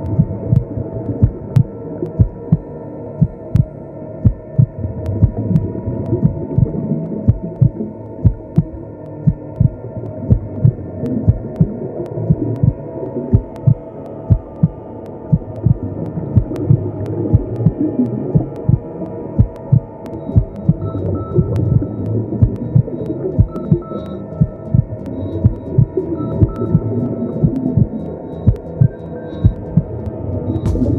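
A steady pulse of low, heartbeat-like thumps over a continuous low hum that never lets up. A faint high tone flickers in and out near the end.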